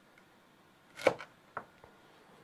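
A broad-bladed knife chops down through a small chili pepper and strikes a wooden cutting board once, sharply, about a second in. Two much lighter taps follow.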